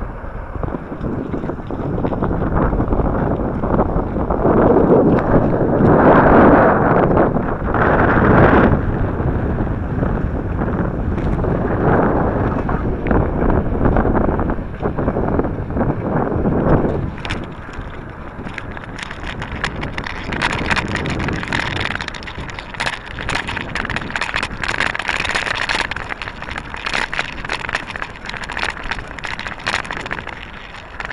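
Wind buffeting the microphone of a handlebar-mounted camera on a moving bicycle, loudest in the first third. About halfway through the heavy rumble eases into a thinner hiss full of small rattling clicks.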